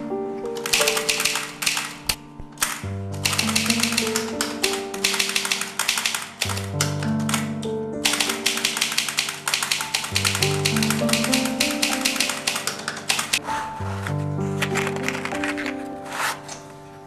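Music with sustained melodic notes over a slow-moving bass line, with rapid clattering typewriter keystrokes laid over it; the clatter breaks off briefly about two seconds in.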